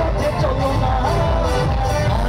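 Live band music heard from the audience, with strong pulsing bass and drums under one wavering melody line.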